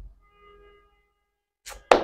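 A pause in a woman's speech: a faint held tone with several overtones, under a second long, about a third of the way in, then a quick, sharp intake of breath near the end as she prepares to speak again.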